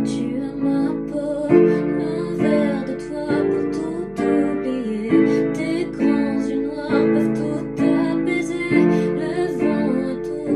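A woman singing a slow French ballad, accompanied by digital piano chords struck about once a second.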